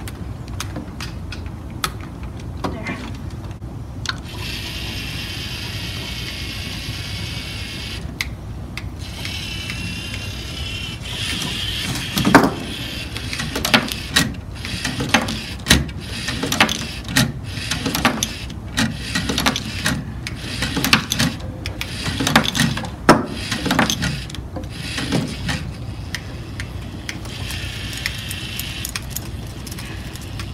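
LEGO Mindstorms EV3 robot's motors whirring as it drives across the competition table, with a whine rising and falling for several seconds early on and again near the end. In the middle stretch, plastic LEGO attachments clack and knock sharply many times, over a steady hubbub of voices.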